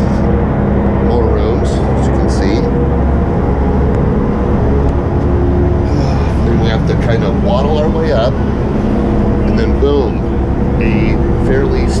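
The fishing boat's engines and machinery droning steadily and deep, heard below deck, with a few scattered clicks and knocks over it.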